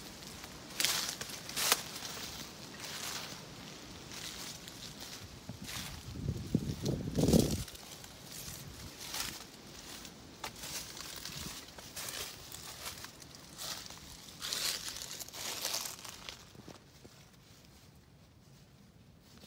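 Footsteps crunching and rustling through dry leaves and debris, irregular steps and scuffs, with a louder, lower scuffing noise about six to seven seconds in. The sound grows quieter near the end.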